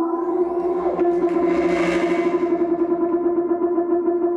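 Live experimental electronic music: a steady, fluttering drone tone, joined about half a second in by a swell of processed hiss and noise that builds to a peak near the middle and fades away before the end.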